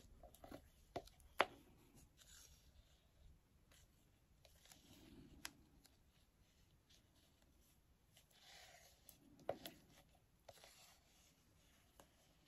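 Wooden craft stick scraping thick mixed epoxy resin out of a plastic mixing cup, with a few light ticks of stick on cup, the loudest about a second and a half in and another near ten seconds; otherwise near silence.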